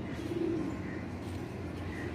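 Domestic pigeons cooing, with one low coo about half a second in.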